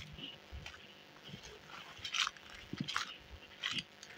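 Footsteps crunching through dry grass and dead leaves, a few scattered short crunches.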